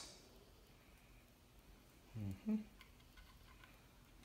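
Quiet handling of a graphics card and its PCIe power-cable plug, with a few faint clicks and a short 'mm-hmm' a little past halfway.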